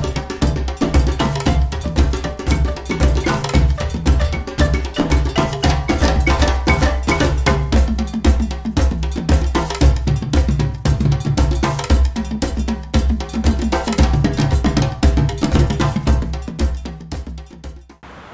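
Traditional Guinean percussion music: drums with a clanking metal bell pattern in a fast, steady rhythm, fading out near the end.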